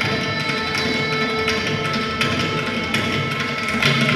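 Carnatic music in raga Margahindolam: mridangam strokes accompany a violin melody over a steady drone.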